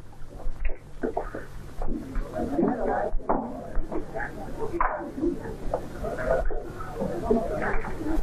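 Indistinct chatter of several people, with scattered clicks and knocks, over a steady low hum from the old soundtrack.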